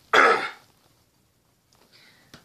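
A man clearing his throat once, a short harsh burst of about half a second.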